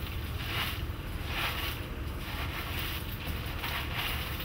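Bare hands raking and scooping through sandy soil full of tea seeds, giving a series of gritty rustling swishes about once a second, over a steady low rumble of wind on the microphone.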